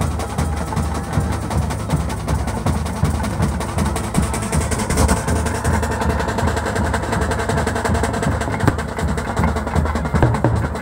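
Rapid, continuous drumming with other percussion, steady and loud throughout.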